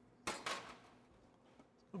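Two brief clunks a quarter second apart, the second dying away quickly.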